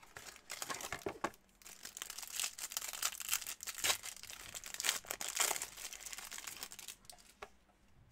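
A trading-card pack wrapper being torn open and crinkled by hand: irregular crackling and rustling that stops shortly before the end.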